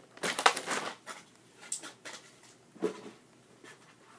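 Cardboard-and-plastic craft packaging being handled, with a quick burst of rustling and knocks in the first second, then a few scattered taps and rustles.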